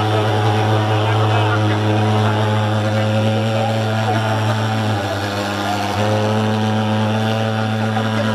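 Handheld pulse-jet thermal fogging machine spraying mosquito insecticide, running with a steady, loud buzzing drone that dips briefly about five seconds in.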